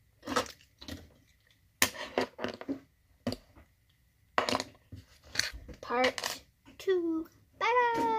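Small plastic Lego pieces and minifigures clicking and tapping against each other and the tabletop as they are handled. A child's voice makes a few short pitched sounds late on, and a held voiced sound starts near the end.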